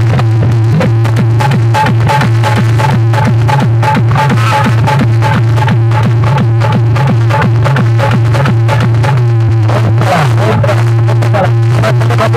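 Very loud electronic dance music blasting from a bank of horn loudspeakers mounted on a procession vehicle, with a steady beat and a constant heavy low drone beneath the melody.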